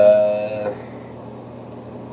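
A man's drawn-out hesitation "uh", held at one pitch and ending under a second in, then quiet room tone with a faint low hum.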